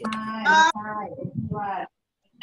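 A child's voice in a drawn-out, sing-song call over a video-call connection, held on steady pitches at first, then breaking into shorter syllables and stopping shortly before the end.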